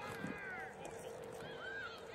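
Several women's voices shouting and yelling in high, rising-and-falling calls, without clear words, during live rugby play.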